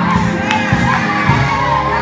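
A church congregation shouting and praising aloud together over music, many voices at once.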